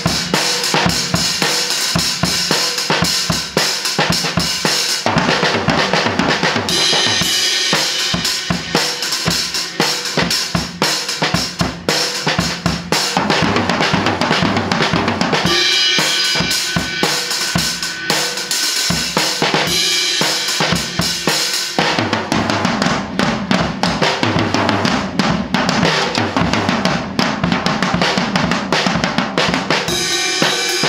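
Acoustic drum kit played continuously: a beat on snare, bass drum and cymbals broken up with fills. The cymbal wash drops back for a few seconds about three quarters of the way through, leaving mostly the lower drums.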